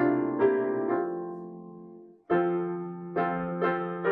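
Piano playing a hymn tune in chords. Each chord rings and decays. The phrase dies away about two seconds in, and after a brief gap new chords begin.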